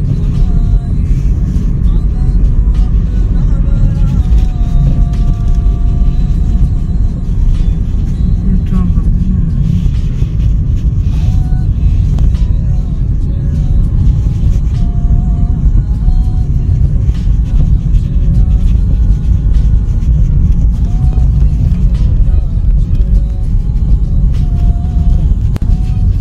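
Steady low rumble of a car driving along a mountain road, heard from inside the car, with faint music playing over it.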